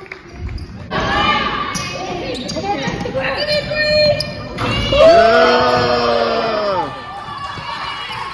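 A basketball being dribbled on a hardwood gym floor during a game, amid shouting voices, with one long drawn-out shout about five seconds in.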